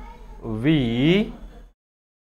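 A man's voice saying one drawn-out word, "we", its pitch rising and falling, then dead silence near the end.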